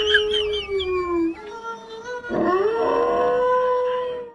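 White fluffy dog howling in long held notes: the first sags and stops about a second in, then a second howl rises and is held near the end. It is howling along with wolf howls from a television.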